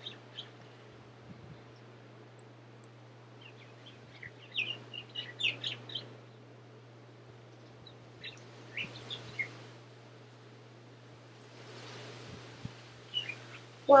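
Short bird chirps in scattered clusters, loudest about four to six seconds in and again around nine seconds, over a steady low hum.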